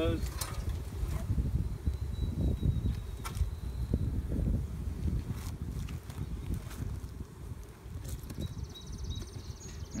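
Steel hive tool prying apart two wooden beehive boxes, with a few sharp cracks and scrapes as the propolis-sealed seam gives, over honey bees buzzing and a steady low rumble.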